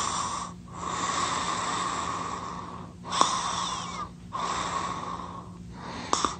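Snoring sound effect: long, wheezing breaths in and out, each lasting one to two seconds, with brief pauses between them.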